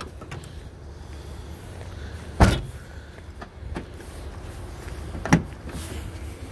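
Two car-body thumps over a steady low rumble. About two and a half seconds in, a VW Jetta's trunk lid is shut with a slam. About five seconds in comes the sharper clunk of the driver's door latch releasing as the door is opened.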